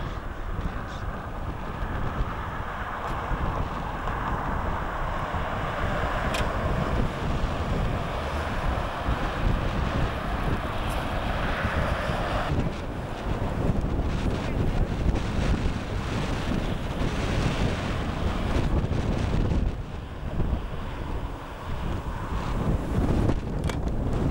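Wind buffeting the microphone, an uneven low rumble throughout, with a mid-pitched hiss that cuts off abruptly about halfway through.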